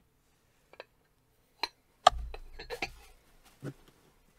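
Stoneware bowls handled and set down: a couple of light clicks, then a heavy knock with a dull thud about two seconds in, followed by several smaller clinks and clatters.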